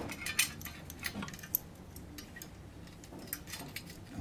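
Scattered light metallic clicks and taps as a steel screw is handled and set against a steel sink-mounting bracket on the wall, with one sharper click about one and a half seconds in.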